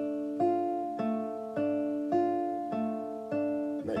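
Nylon-string classical guitar played fingerstyle: a repeating arpeggio over a D minor chord, thumb on the G string, index on the B string and middle finger on the top E. Evenly spaced plucked notes, a little under two a second, each left ringing into the next.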